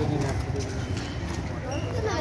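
Distant voices over a steady low rumble of outdoor background noise, with a few faint knocks.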